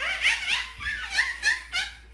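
A baby laughing hard in a quick string of short, high-pitched bursts while being lifted and swung overhead.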